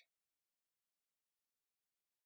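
Silence: the sound drops out completely as the speech ends, with nothing audible after.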